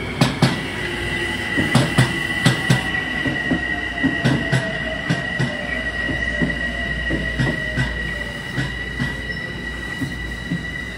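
Metro-North electric commuter trains on the move: wheels clack sharply over rail joints, several strikes in quick pairs in the first few seconds and then lighter, under a steady high wheel squeal and a fainter whine that falls slowly in pitch as a train slows into the station.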